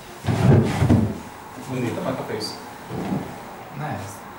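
Indistinct voices talking in the room, loudest about half a second in, with a little handling noise.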